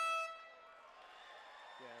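Air horn sounding once, a single steady high tone that fades away over about a second: the signal that the round is over.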